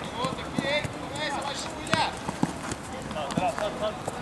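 Football players shouting and calling to one another during play, with sharp knocks of the ball being kicked and of running feet; the loudest knock comes about halfway through.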